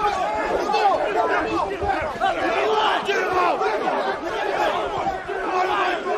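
A group of men shouting and yelling over one another in a scuffle, many voices at once with no break.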